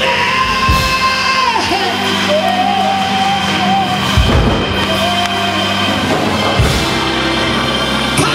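Live gospel praise-break music: a band plays loud and steady with a few heavy beats. A woman's amplified voice holds long high notes over it, and the congregation shouts and whoops.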